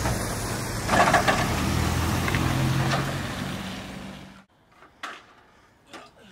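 A motor vehicle engine running on the street with a steady low hum, cutting off abruptly about four seconds in. After it come a few light knocks and rattles from an aluminium ladder being handled.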